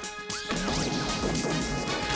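Comic sound effects over background music, with a sudden crash about half a second in and sliding tones around it.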